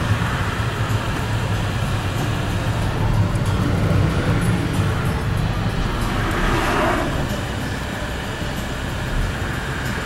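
Car cabin noise while driving: a steady low engine and road-tyre rumble heard from inside the car.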